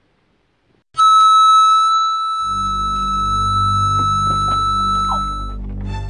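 Microphone feedback squeal through a PA loudspeaker: one high, steady tone that starts suddenly about a second in, loudest at its onset, and cuts off about five and a half seconds in. Background music with a low, steady beat comes in beneath it.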